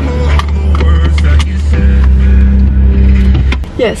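Loud music with a heavy bass line playing over a car's stereo, stopping abruptly near the end.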